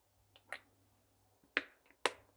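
A few short, sharp clicks and splutters from a plastic ketchup squeeze bottle as it is squeezed over toast and finished with. The loudest comes about one and a half seconds in.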